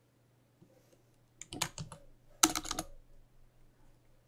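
Typing on a computer keyboard: a few keystrokes about a second and a half in, then a quicker, louder flurry of keys about half a second later.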